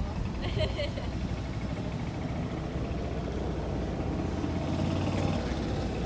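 Outdoor background sound: a low steady rumble with faint, indistinct voices, clearest about a second in.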